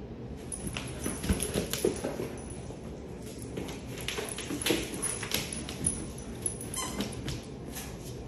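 A dog making short vocal sounds during play over a ball, mixed with scattered taps and clicks through most of the stretch.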